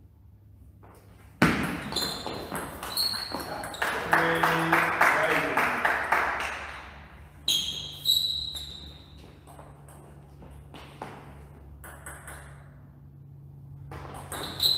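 Table tennis ball pinging off bats and the table in a rally, then a short shout and a flurry of rapid claps. Another sharp ping of the ball comes about halfway through, followed by a few fainter bounces.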